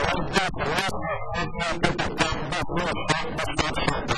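Speech only: a voice speaking Portuguese without pause.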